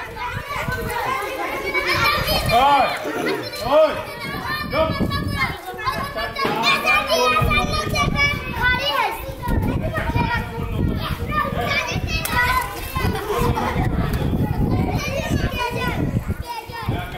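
Many children shouting and calling out over one another, a continuous chatter of young voices at play.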